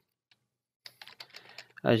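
Computer keyboard typing: a quick run of keystrokes starting about a second in, after a brief silence.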